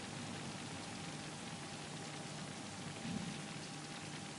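Steady faint hiss of the voice-over recording's background noise, with a faint steady tone running through it.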